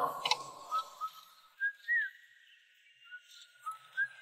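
A scooter's spring-loaded kickstand clicks down with a brief rattle at the start. A string of short whistled notes follows, a few of them sliding quickly up or down in pitch.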